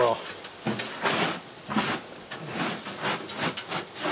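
Hands scooping and rubbing dry, crumbly biochar potting mix in a tub: irregular gritty rustling and scraping strokes, the loudest a little over a second in.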